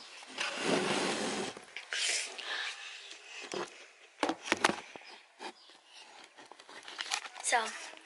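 Handling noise from a phone being picked up and moved: a rush of rubbing against the microphone, then a few sharp knocks in the middle as it is set down and adjusted.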